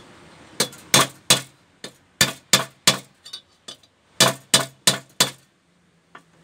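About a dozen sharp metallic taps in quick runs of three or four, each with a brief ring: a metal hand tool striking a short copper pipe.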